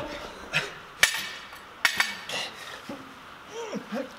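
Metal gym weights clanking: two sharp clanks about a second apart as dumbbells are set down and a kettlebell is picked up.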